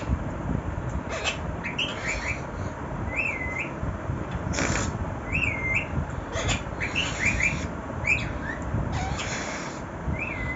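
Rose-ringed parakeet making short chirps, some in quick runs of three or four, and a few looping whistled calls every couple of seconds, with a few brief scratchy noises between them.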